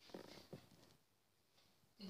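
Near silence: room tone with two faint, brief soft sounds in the first second.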